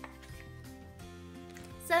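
Soft background music with steady held tones, and a single faint click right at the start.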